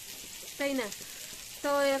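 Steady sizzle of food frying in a pan, with a woman's voice breaking in briefly twice.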